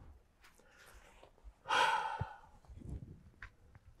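A person sighs once, a short breathy exhale about halfway through.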